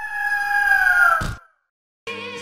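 A bird cry sound effect: one long call that holds its pitch for about a second, then falls away, ending in a short burst of noise.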